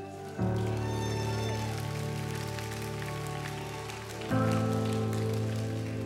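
Live worship band playing a slow instrumental passage of sustained chords, with a new chord coming in about half a second in and another a little after four seconds, each louder as it arrives.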